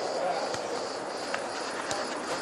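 Futsal match on an outdoor court: distant players' voices over a steady background, with a few light ball-kick clicks.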